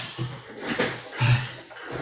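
A man breathing hard, out of breath after physical exertion, with a short low voiced sound about a second in.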